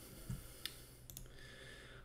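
Faint room tone with a few soft clicks: a dull tap about a third of a second in, then two sharper clicks about half a second apart.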